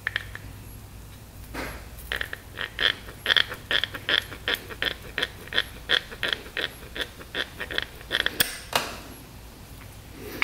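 A steady run of small, sharp clicks, about three to four a second, as the piston assembly is twisted by hand against its rod. There are a couple of louder knocks near the end.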